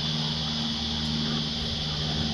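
A steady, high-pitched drone of insects with a steady low hum underneath, both unchanging throughout.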